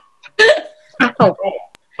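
Speech only: short bursts of voice on a video call, including a brief 'oh', with one faint click near the end.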